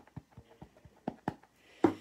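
A rubber stamp mounted on a clear acrylic block is tapped again and again onto an ink pad to ink it up, giving a series of light, irregular taps, with a louder knock near the end.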